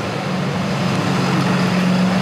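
A road vehicle's engine running on the street: a steady low drone with traffic noise.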